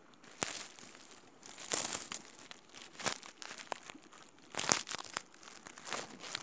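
Handling noise from fingers rubbing and shifting over a phone's microphone: irregular crackling and rustling with a few sharp clicks, the loudest rustle a little before the end.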